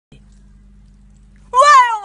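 A faint low hum, then about one and a half seconds in, a woman's loud, high-pitched drawn-out vocal exclamation that rises briefly and then slides down in pitch.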